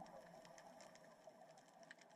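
Near silence underwater, with faint scattered clicks at an irregular pace.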